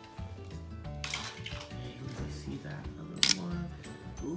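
Background music with held notes, and one sharp click about three seconds in as a die-cast Hot Wheels toy car is set down on a table.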